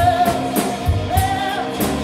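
Live rock band playing: a male singer holding long sung notes over two electric guitars, a bass guitar and a steady drum beat.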